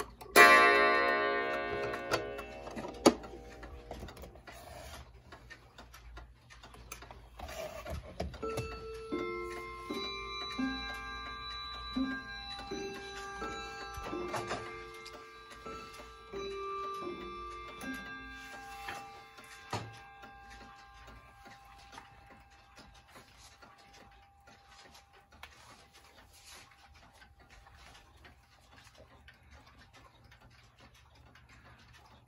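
A clock's coiled wire gong struck once, ringing and fading over a couple of seconds. Later, clock chimes play a tune of several notes in groups for about ten seconds, with clocks ticking under them.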